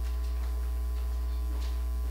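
Steady electrical mains hum from the sound system, with a couple of faint brief clicks about half a second and a second and a half in.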